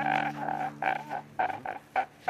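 A man crying in short, broken sobs over a low held chord that stops near the end.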